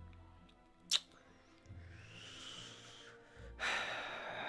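A man breathing out in long, breathy exhales, the last one louder near the end, with a sharp click about a second in. Faint background music underneath.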